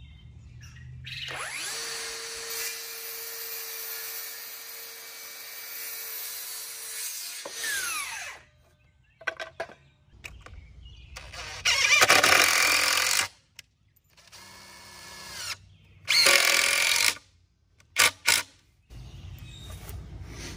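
Cordless circular saw spinning up, cutting through a pine 2x8 board for about six seconds, then winding down. After a pause, a cordless impact driver runs in several short bursts, driving screws to join the board corners.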